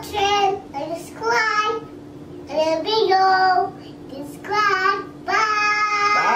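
A young girl singing in short phrases with pauses between them.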